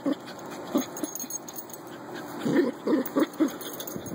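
Dog making short vocal sounds while digging in soil: one just under a second in, then a quick run of five or six about two and a half seconds in.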